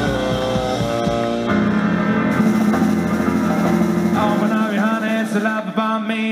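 Live band playing: a saxophone carries the melody over keyboard and drum kit. The drums drop out about four seconds in while the saxophone and keys play on in quicker runs.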